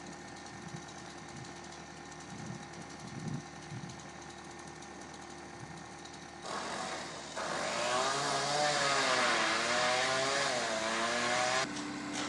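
A small engine running at high revs, starting suddenly about halfway through, its pitch wavering up and down, then cutting off just before the end. A few faint low knocks come before it.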